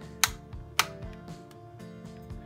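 Background music with steady sustained tones, and two sharp clicks about half a second apart near the start.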